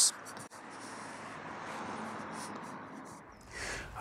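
Faint, steady outdoor background hiss with a single small click about half a second in. It swells briefly near the end, with a low rumble under it.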